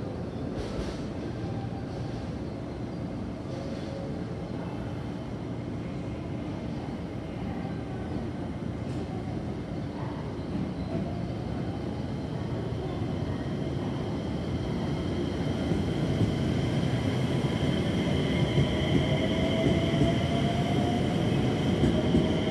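JR West 227 series electric train pulling away and gathering speed. Its traction-motor whine rises slowly in pitch from about the middle, over a low rumble of wheels on rail, and it all grows louder as the train nears and passes close by near the end.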